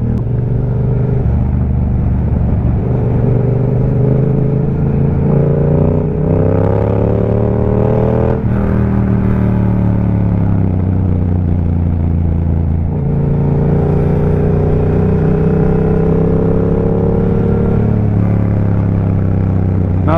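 Motorcycle engine running under way at road speed, its pitch climbing over several seconds, dropping suddenly about eight seconds in, easing off, then climbing again from about thirteen seconds.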